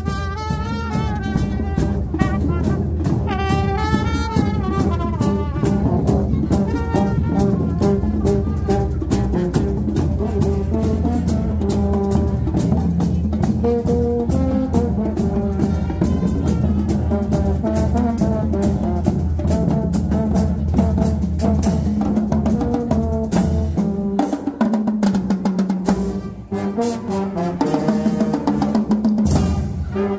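Marching band playing: a brass section of trumpets, trombones and low brass carries the melody over snare and bass drums beating steadily. For a few seconds past the middle the low drums drop out and the sound thins briefly before the full band comes back in.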